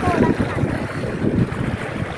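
Wind buffeting the microphone of a handheld phone outdoors: an irregular low rumble.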